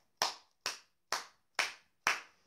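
A man clapping his hands in an even rhythm: four claps, about two a second.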